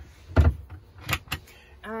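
Campervan kitchen cupboard door swung shut with one thump about half a second in, then two light clicks.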